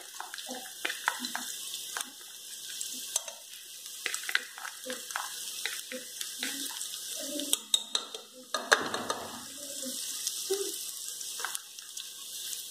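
Crushed garlic sizzling faintly in hot lard in a pressure cooker, with scattered small taps and scrapes as a knife pushes the garlic off a small cup into the pan. About nine seconds in there is a brief louder burst of sizzling.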